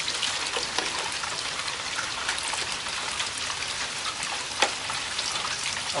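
Steady rain falling, with rainwater from a PVC first-flush downspout pouring into a funnel and plastic milk jug. A few sharp drip-like taps stand out, the clearest about four and a half seconds in.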